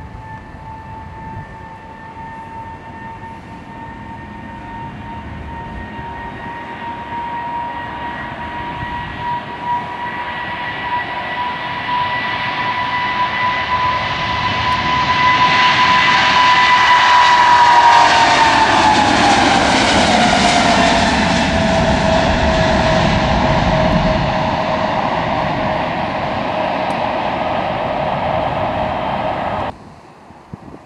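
Boeing 777 jet airliner taking off at full thrust: a high engine whine over a roar that builds as it approaches, loudest as it lifts off and passes a little past halfway. The whine then drops in pitch and the roar fades as it climbs away. The sound cuts off abruptly near the end.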